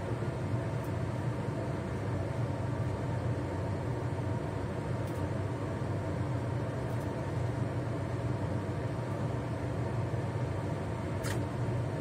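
Steady low mechanical hum of a running fan in a small kitchen, with a few faint light clicks.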